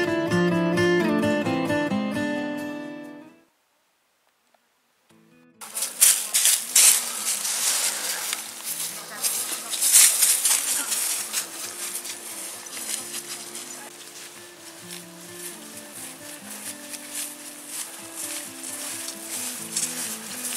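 Acoustic guitar music fades out about three seconds in, followed by a brief silence. Then comes live outdoor sound: irregular crunching footsteps on frost-covered grass, with faint voices underneath.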